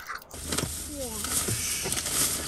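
Steady hiss of a car's cabin, starting abruptly about a third of a second in, with a few short falling voice sounds over it.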